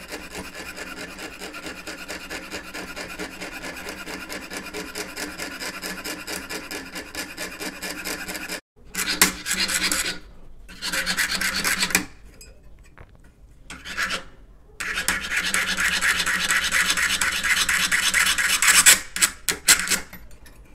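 A fine-bladed jeweller's saw cutting thin brass sheet in quick, even back-and-forth strokes as the last part of the cut is finished. It pauses briefly twice, eases off for a couple of seconds midway, then saws hardest near the end.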